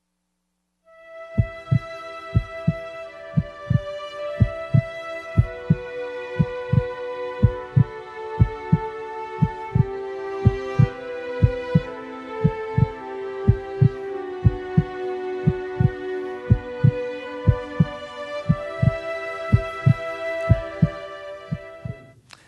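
Intro theme music of held, slowly changing chords over a steady heartbeat thump, about two beats a second, starting about a second in.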